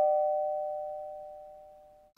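The fading tail of a two-note ding-dong chime: a higher note and a lower one ring on together, die away steadily and cut off near the end.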